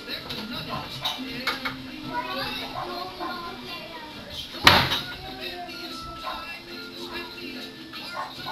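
Children's voices chattering indistinctly in the room, with one sharp knock about four and a half seconds in.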